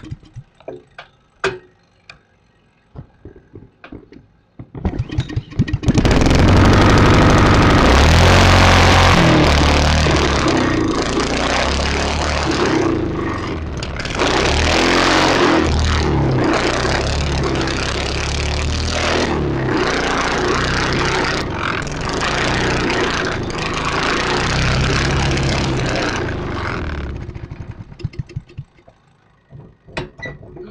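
A go-kart's small gas engine starts about six seconds in, runs loud with its speed rising and falling, and dies away about 27 seconds in. This run was a kill-switch test that failed: the kill switch is broken. Light clicks and knocks come before the engine starts.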